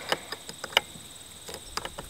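A glow plug igniter clicks and scrapes in a series of short, sharp metallic clicks as it is pushed and twisted onto a Super Tigre glow plug without locking on. Crickets chirp steadily behind.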